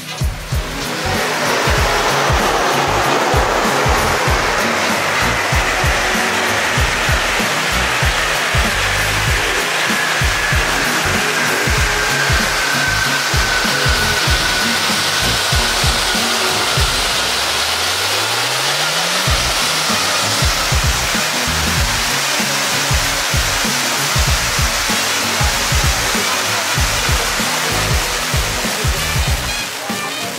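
Floor spark fountains hissing steadily, the hiss swelling in about a second after they ignite, over background music with a steady beat.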